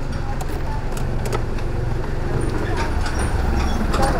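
Honda Click scooter's single-cylinder engine idling steadily while warming up, with a few light clicks over it.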